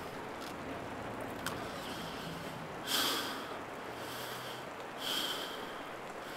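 A man breathing sharply in through the nose twice, about three and five seconds in, over a faint steady low hum.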